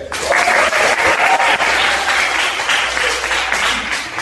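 Audience applauding, starting suddenly as the recorder playing stops.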